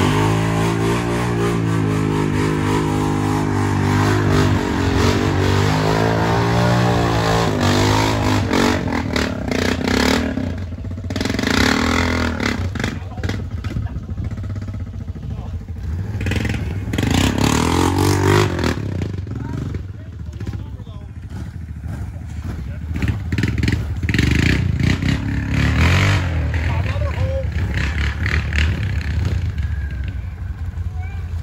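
A snorkelled mud ATV's engine revving in repeated bursts, its pitch climbing and falling. The rider is off the machine wrestling it through deep mud water, so it is bogged down.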